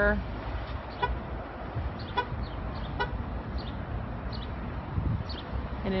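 Outdoor ambience on a car lot: a steady low rumble of wind and distant traffic, with a few brief beeps like short toots about one, two and three seconds in, and faint short high chirps.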